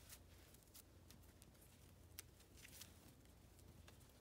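Near silence with faint, scattered rustles and light ticks of a twisted rope being handled and drawn around wooden poles as a clove hitch is tied, the sharpest tick about two seconds in.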